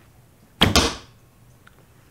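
Arrow shot from a traditional bow strung with a Dyna Flight 97 string: a sharp string slap on release about half a second in, followed almost at once by the arrow hitting the target, the sound dying away within half a second.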